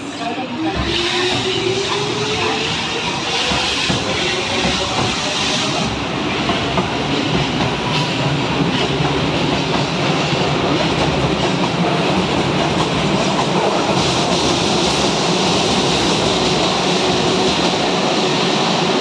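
Keihan 6000 series electric train pulling out of an underground station: a motor whine rising in pitch over the first few seconds as it gathers speed, then a loud, steady rush of wheels on rail as the cars pass, echoing off the platform.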